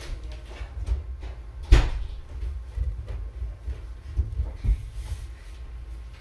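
A few dull knocks and thumps over a low rumble, the loudest and sharpest about two seconds in.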